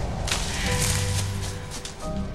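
Leafy branches and undergrowth swishing in a rushing burst as someone pushes quickly through brush, over film score music.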